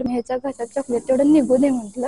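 A woman talking, with a steady high hiss that comes in about half a second in and carries on under her voice.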